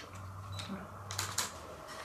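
A few light clicks of small plastic toy pieces being handled, coming a little past the middle, over a faint steady low hum.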